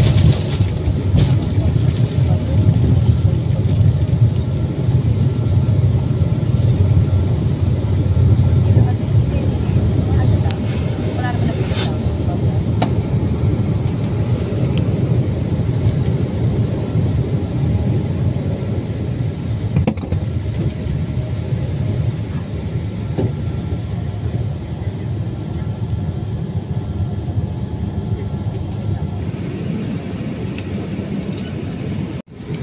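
Cabin noise of a Boeing 787-8 Dreamliner climbing after takeoff: a steady low rumble of engines and rushing air that eases off gradually. The sound changes abruptly just before the end.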